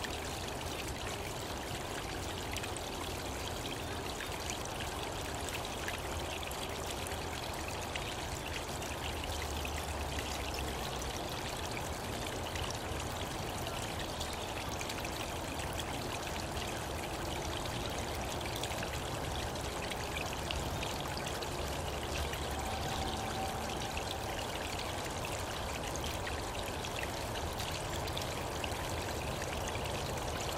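A small brook running steadily, the water's babble an even rush.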